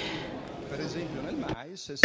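A short pause in a man's speech in a reverberant hall: the echo of his last words fades, leaving low room noise, with a faint voice in the background in the second half.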